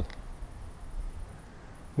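Faint background noise in a pause between speech: a low rumble and a light hiss, with no distinct event.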